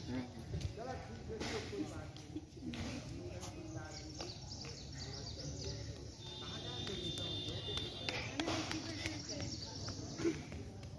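Young children's voices, calling and chattering without clear words, over a steady low background rumble. A thin, high, steady tone sounds for about two seconds just past the middle.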